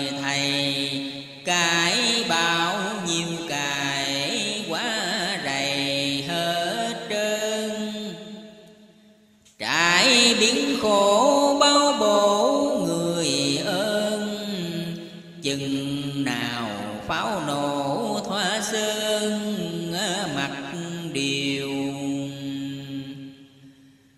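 A solo voice chanting Vietnamese verse in long, drawn-out melodic phrases, holding and bending each note. One phrase fades out just before the middle and a new one starts sharply; another fades near the end.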